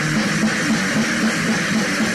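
Lo-fi crust punk / hardcore punk band recording: heavily distorted guitar and bass over steady drumming, at an even, loud level with no break.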